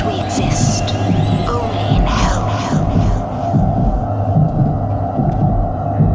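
A steady low hum with an irregular throbbing pulse beneath it, and a few brief hissing bursts in the first three seconds.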